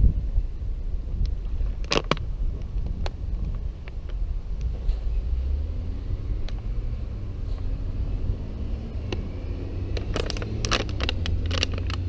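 Steady low rumble on a helmet-mounted camera's microphone, with a few scattered clicks and a burst of clicking and rustling handling noise near the end as the rider moves and looks down at the bike.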